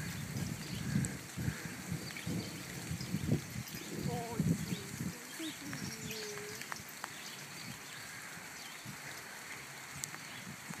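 Warthog and Yorkshire terriers at play: irregular low grunts and growls, with a few short higher-pitched sounds, dying down about halfway through.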